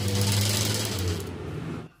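Small electric motor running off an isolation transformer, with a steady low hum and a whirring rush. It stops abruptly near the end.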